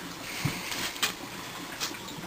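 Scrambled egg frying in a pan over an HHO torch burner: a steady hiss, with a few light taps of the stirring utensil against the pan.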